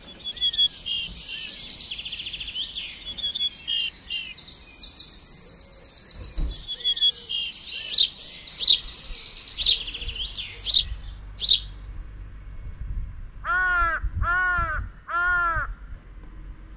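Small birds chirping and chattering rapidly, then several sharp falling calls, and near the end a crow cawing three times.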